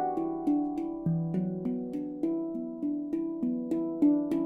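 Handpan tuned to an E Low Sirena scale, played with the fingers: a steady run of struck notes, about three a second, each ringing on under the next, with a deep low note about a second in.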